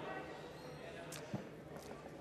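Faint murmur of a large legislative chamber with distant voices, and one short knock about halfway through.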